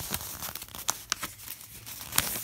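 A sheet of paper being handled and folded by hand: a few short, light crinkles and snaps spread through the moment.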